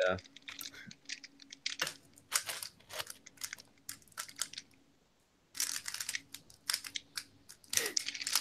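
Moyu 15x15 plastic speedcube being turned by hand: quick irregular clicking and clacking of its layers, with a pause of about a second near the middle.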